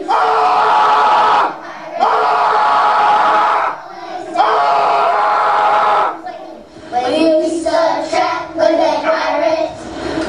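A man yelling into a handheld microphone, amplified: three long held shouts, each about a second and a half with short breaks between, then shorter, shifting vocal sounds from about seven seconds in.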